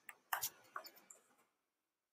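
A few faint, short clicks and taps in the first second or so, then dead silence.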